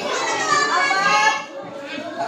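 Children's voices talking over one another, easing off near the end.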